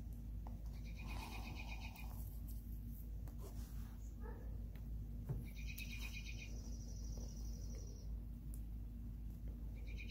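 A bird trilling three times, each a quick high run of repeated notes lasting one to two and a half seconds: about a second in, around the middle, and again near the end. Faint clicks and rustles of leather being handled sit under the trills.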